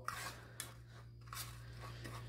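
Fork stirring moistened bee pollen granules on a plate: faint scraping and crunching strokes, the pollen being worked into a sticky paste. A low steady hum underneath.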